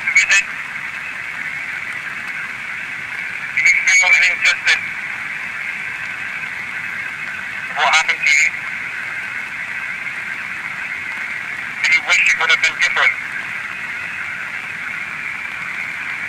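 Panasonic handheld digital voice recorder playing back an EVP recording through its small built-in speaker: a steady, thin hiss, broken roughly every four seconds by short tinny bursts of recorded sound.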